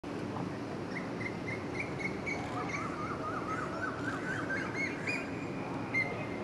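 Birds chirping over steady low outdoor background noise. One bird repeats short chirps a few times a second, and from about halfway a second run of chirps climbs gradually in pitch.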